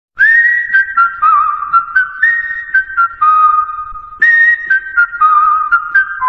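Intro jingle: a whistled tune of short notes stepping downward, with light clicks between the notes. The phrase starts again about four seconds in.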